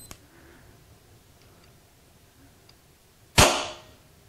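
EDgun Leshiy PCP air pistol firing once when the trigger gauge trips its trigger: a single sharp crack with a short tail about three and a half seconds in. Two light clicks come at the start.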